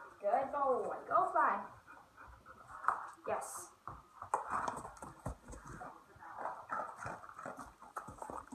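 A dog whining and yipping in a quick run of short rising-and-falling cries in the first second and a half, followed by scattered light clicks and knocks of movement.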